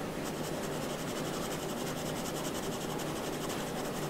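Pencil scratching on drawing paper in a rapid, even run of short shading strokes.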